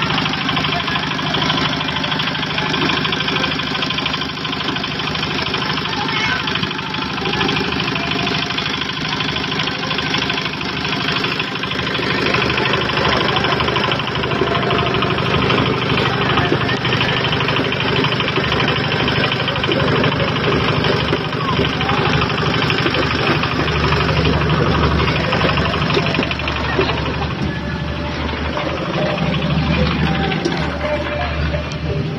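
A concrete mixer's engine running steadily, a little louder near the end, with voices of a crowd of people working.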